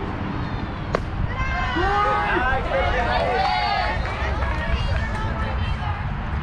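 A single sharp crack about a second in, then several high voices shouting and cheering in overlapping calls for a couple of seconds, over a steady low wind rumble on the microphone.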